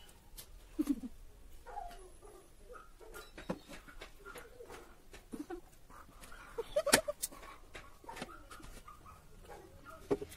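Eating straight from plates without hands: irregular mouth noises and clicks as faces press into food on the plates, with a few short whine-like vocal sounds, a sharp click just before seven seconds being the loudest.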